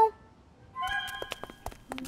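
Soft cartoon background music after a brief lull: a few held notes with several light taps, about a second in.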